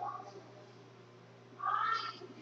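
Quiet room, then about a second and a half in a girl's short, high-pitched, squeaky vocal sound.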